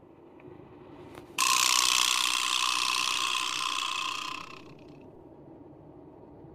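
A loud, rattling, ratchet-like sound effect. It starts suddenly about a second and a half in, runs for about three seconds and fades away.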